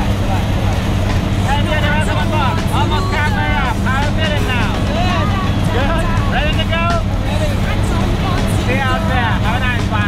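Steady, loud drone of a jump plane's engine and propeller heard inside the cabin, with voices talking over it.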